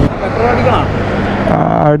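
Motorcycle engine idling with a steady low hum, with people talking over it. A man starts speaking near the end.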